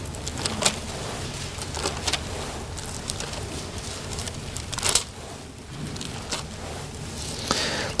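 A congregation turning the thin pages of their Bibles: scattered short paper rustles and crackles over a low, steady room hum.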